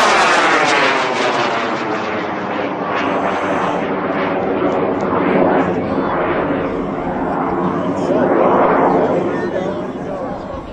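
Long roar of a research 98 mm N800 high-power rocket motor still burning as the rocket climbs, with a swishing, sweeping change in tone and a slight fade near the end. The unbroken burn marks it as a long-burn motor.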